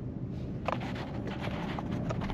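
Steady road and tyre noise inside the cabin of a moving Hyundai Tucson plug-in hybrid, with a few light knocks from about the middle onward.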